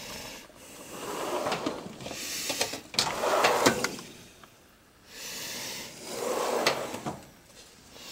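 Drawers of a steel rolling tool chest sliding open and shut on their metal runners, about four times, each slide ending in a click or knock.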